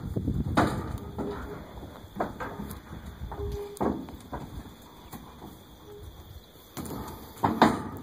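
Horses' hooves clunking on the floor of a stock trailer as the horses step up into it one after another: a string of separate knocks, the loudest pair near the end.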